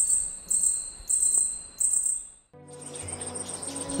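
Fat katydid singing: a high, buzzy chirp repeated about every half second, four phrases that fade out halfway through. Soft background music then comes in.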